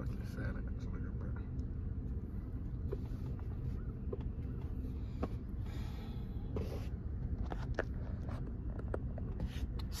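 Steady low rumble of a car heard from inside the cabin, with a few faint, sharp clicks scattered through it.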